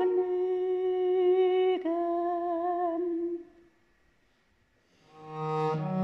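A soprano sings two long held notes with light vibrato, then stops for about a second and a half. Near the end a viola da gamba comes in with low bowed notes.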